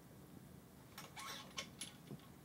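Faint handling noise as a cloth wipes a trumpet's piston valve: a soft rub with a few light clicks about a second in.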